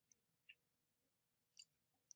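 Near silence broken by a few faint computer mouse clicks as dialog settings are adjusted, the loudest a quick pair about a second and a half in.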